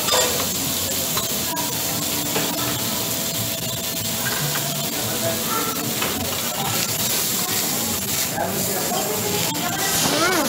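Beef searing on a hot steel teppanyaki griddle: a steady sizzling hiss, with a few short clicks of the metal spatula on the steel.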